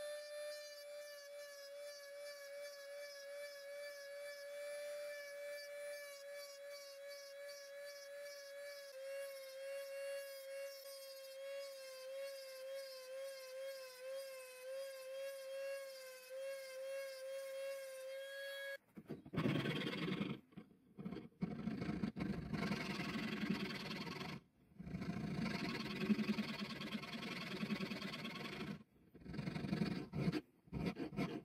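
Handheld rotary tool spinning up to a steady high whine, its pitch wavering slightly as the small bit grinds notches into the spine of a steel file blade. The whine cuts off suddenly about two-thirds of the way in, and louder scraping of a hand file on the steel follows in runs of strokes with short pauses.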